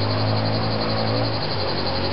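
A steady mechanical hum: a low drone over an even hiss, with no clear start or stop.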